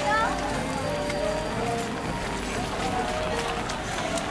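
Steady rain falling on umbrellas and wet ground, with people's voices and music with held notes changing pitch every half second or so.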